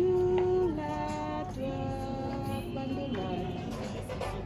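A young female voice singing a slow melody in long held notes that step from pitch to pitch.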